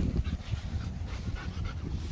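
German Shepherd panting, over wind rumbling on the microphone.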